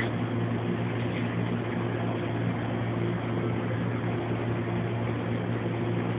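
Steady low machine hum with a constant deep drone, unchanging throughout.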